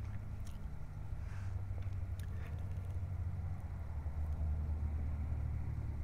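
A steady low hum with a few faint clicks, between stretches of narration.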